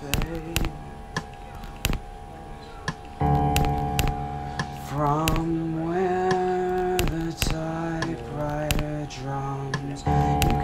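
Home-recorded demo music: held pitched notes over sharp, regular clicking percussion. It grows fuller and louder about three seconds in, with a wavering melody line near the middle.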